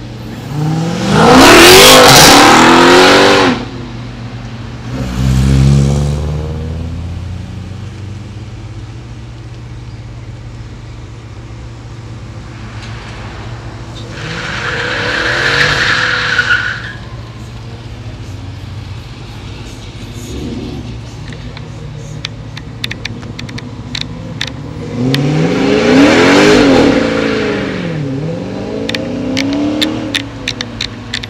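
High-performance V8 cars accelerating hard past at full throttle, four times: each engine note rises as the car comes on and falls away as it passes. A tyre squeal is heard with the pass around the middle, and sharp clicks are heard near the end.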